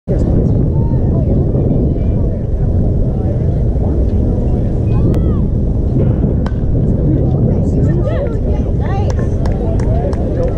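Steady low rumble of wind buffeting an action camera's microphone, with spectators' and players' voices calling out behind it. The voices grow busier in the last couple of seconds as the ball is put in play.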